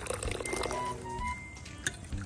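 Quiet background music with a few long held notes, over hot water pouring from a kettle into a bowl. A single sharp click comes near the end.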